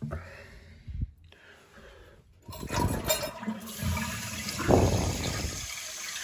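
Kohler toilet flushing with its tank lid off: water rushes loudly through the tank and bowl, starting suddenly about two and a half seconds in after a quieter stretch with a light knock.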